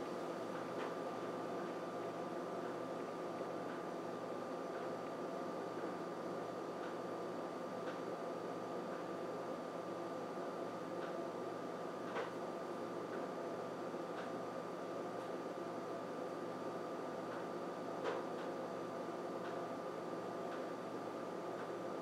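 Steady low background hum of the room, with a faint steady whine and two faint ticks about twelve and eighteen seconds in.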